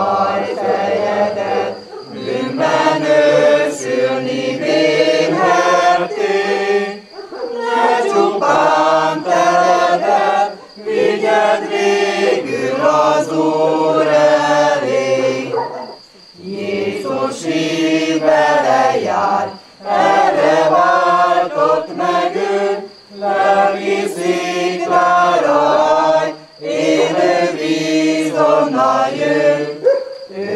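A community group of men and women singing a hymn together, unaccompanied, in phrases of a few seconds with short breaks for breath between them.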